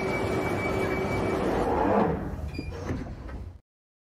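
Sound effect of a London Underground train: a steady rumble with a held whine, sliding doors closing about two seconds in, then it thins out and cuts off abruptly.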